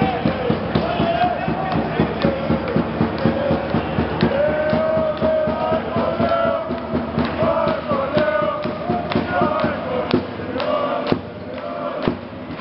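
Sports supporters chanting in unison to a steady drum beat, about three beats a second. The drumming and chant thin out about ten seconds in, and a single sharp knock follows shortly after.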